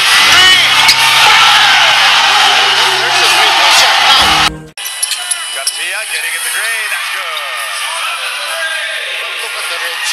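Basketball broadcast sound: loud music and voices over the arena, cutting off sharply about four and a half seconds in. After the cut comes quieter court sound with repeated short squeaks of sneakers on the hardwood.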